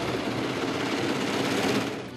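Steady mechanical running noise of processing machinery in a meat plant.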